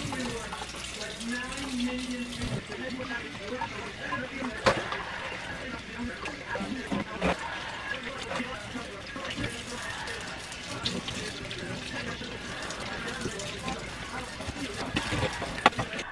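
Kitchen faucet running steadily from its pull-down spray head, the stream poured into a flowerpot to water a plant, with a few light knocks.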